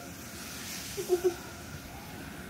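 Quiet indoor room tone with a steady faint hiss; a child's voice says a few short syllables about a second in.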